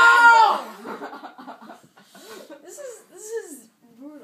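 Children's voices: a loud shout at the start, then laughter and indistinct vocal sounds.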